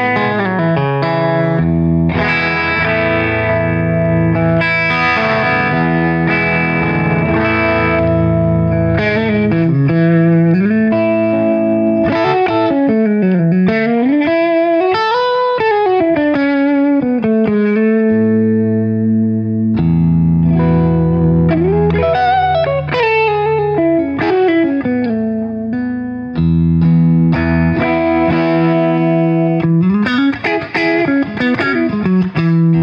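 Electric offset guitar with Mojo dual gold foil pickups, played through an amplifier in ringing, sustained chords. Around the middle and again about two-thirds through, whole chords swoop down and back up in pitch as the Mastery vibrato arm is worked.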